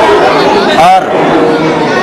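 Speech: a man speaking Hindi.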